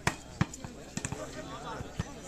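Volleyball spikes: two sharp smacks of the ball, about a third of a second apart, consistent with a hand striking it and the ball slamming down on the hard dirt court, followed by a few softer knocks. Voices talk in the background.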